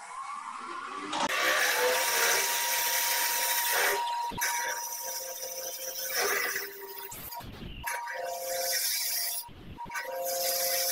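Wood lathe spinning a top blank while a large parting tool cuts into it, removing bulk: a steady hiss of the cut with a thin steady high whine, starting about a second in and breaking off briefly a few times as the tool is lifted.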